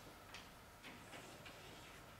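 Faint taps and short scratches of chalk on a blackboard as a word is written, four or five light strokes over a near-silent room.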